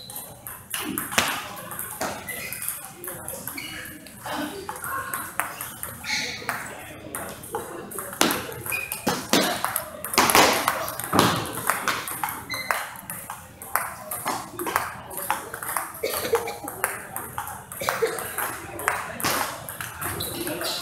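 Table tennis ball being hit back and forth in rallies: a string of sharp clicks from the celluloid ball striking the rubber paddles and bouncing on the table.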